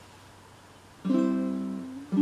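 A baritone ukulele strummed once about a second in, the chord ringing and slowly fading.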